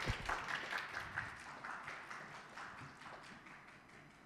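Audience applause that fades away across a few seconds, with a low thump at the very start.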